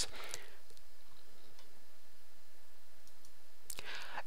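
Pause in a narrated recording: a steady low background hum with a few faint clicks.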